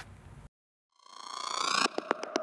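A synthesized rising tone that swells for about a second after a moment of silence and cuts off with a click near the end: the electronic sound effect of an animated logo sting.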